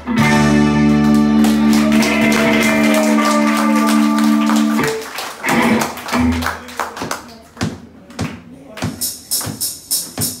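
Electric guitar music: a loud chord rings out for about five seconds and then cuts off, followed by scattered short picked notes and taps at a lower level.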